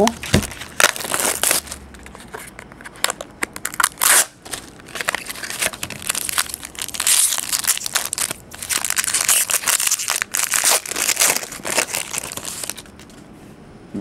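Clear plastic shrink wrap and cellophane on a sealed trading-card box being torn and crinkled by hand, a dense run of irregular crackles that stops about a second before the end.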